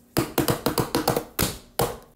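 Hands drumming rapidly on the top of a taped cardboard shipping box: a quick run of taps that spaces out into a couple of separate slaps near the end.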